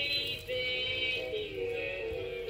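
Music with singing: long held notes at several pitches at once, gliding slowly from note to note.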